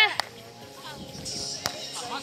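Sharp slaps of a hand striking a volleyball, one just after the start and one about a second and a half in, over faint players' voices.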